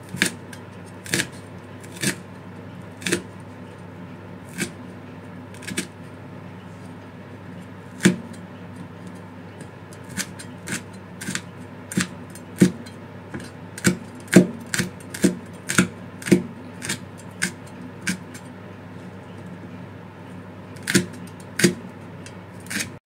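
Kitchen knife chopping red chillies on a plastic cutting board: sharp knocks of the blade on the board, about one a second at first and coming faster in the middle stretch.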